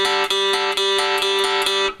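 Three-string cigar box guitar in G-D-G tuning played with a slide held still on one fret, the high and middle strings picked back and forth in quick, even strokes so the two notes ring together.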